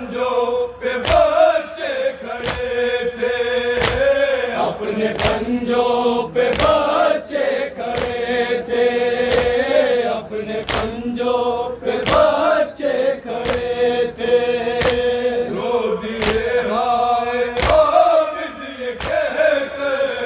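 A group of men chanting an Urdu noha (Muharram lament) in unison into a microphone, marked by sharp rhythmic chest-beating slaps (matam) roughly every two-thirds of a second.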